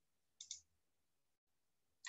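Near silence, broken about half a second in by one brief double click: a computer mouse or key click advancing the presentation slide.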